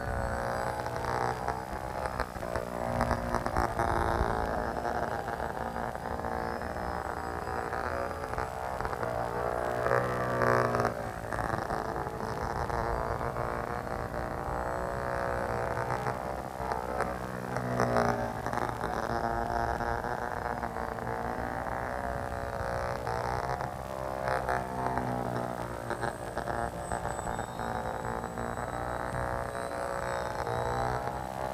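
Small electric motor and propeller of a foam RC biplane in flight, a continuous buzzing drone that rises and falls in pitch as the throttle changes and the plane passes.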